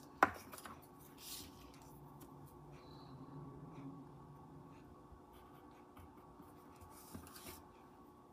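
Quiet handling of craft materials on a table: paper and wooden popsicle sticks being pressed and slid over construction paper, with a sharp click just after the start and a couple of soft rubbing swishes.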